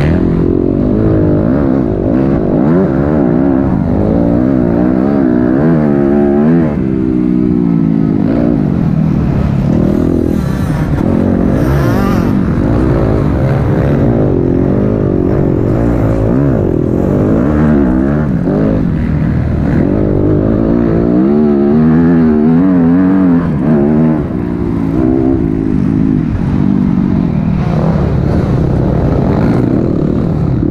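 Dirt bike engine heard from onboard at close range, its revs rising and falling constantly as the rider accelerates and backs off along the track.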